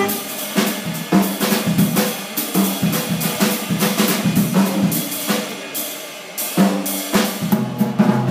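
Jazz drum kit taking a solo break, a busy run of snare, bass drum, rimshot and cymbal hits while the tenor saxophones rest.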